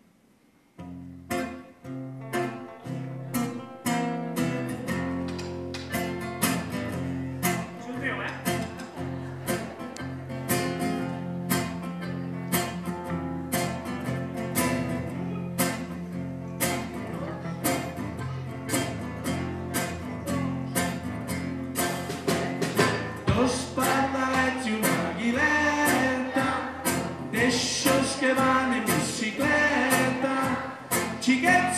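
Live band striking up a children's song about a second in: acoustic guitar strumming and a drum kit keeping a steady beat of about two strokes a second, with a children's choir singing, fuller and louder in the last few seconds.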